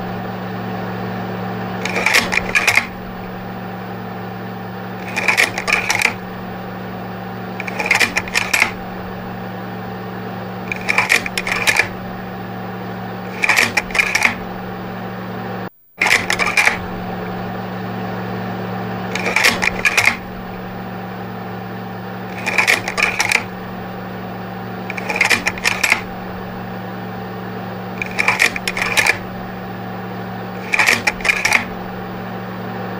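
Projector sound effect: a steady motor hum with a short burst of clattering clicks about every three seconds. The loop cuts out for a moment about sixteen seconds in, then starts over.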